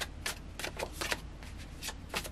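A deck of tarot cards being shuffled in the hands: a quiet, irregular run of short card clicks and flicks.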